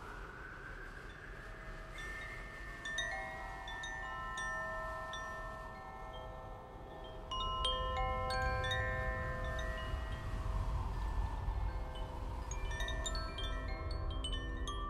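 Koshi chimes (Terra and Ignis tunings) ringing, with clusters of bright, long-sustaining notes that overlap and thicken toward the end. Under them a slow gliding tone rises and falls, and about seven seconds in a low gong swell enters.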